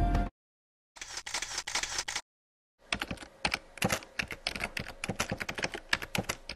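Rapid, irregular clicking, like typing on keys, in two spells: a short one about a second in and a longer one from about three seconds on, with dead silence between. Background music cuts off just at the start.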